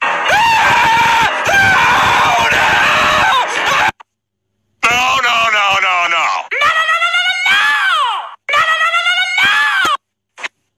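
Loud screaming for about four seconds. After a brief gap comes a string of high-pitched voice calls, each rising and then falling in pitch.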